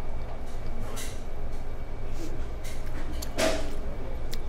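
Steady low hum of a restaurant dining room, with a couple of short soft noises, one about a second in and one near the end.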